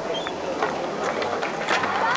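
Skateboard wheels rolling over a concrete skatepark, with scattered clicks and clacks from the board.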